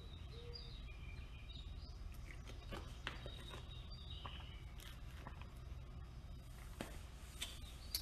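Faint sounds of a person drinking from a plastic water bottle, with a few small scattered clicks, over a low steady hum.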